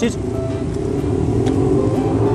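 Road traffic: a motor vehicle's engine running close by, a steady low rumble.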